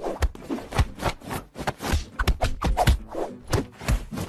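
Rapid, irregular soft thumps and slaps as a hand and a tabby kitten's paws bat at each other on a bed, about three or four hits a second.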